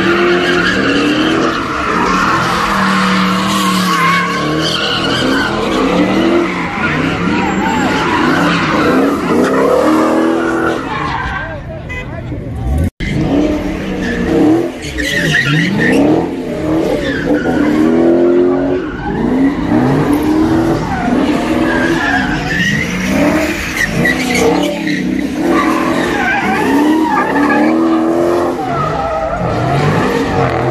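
Cars doing donuts on asphalt: engines revved hard, rising and falling in pitch, over continuous tire squeal as the rear tires spin and smoke. The sound cuts out for an instant near the middle.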